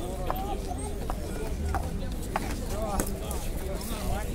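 Concrete paving stones being prised up and knocked against each other, a few irregular sharp stone-on-stone clacks, over the chatter of a crowd.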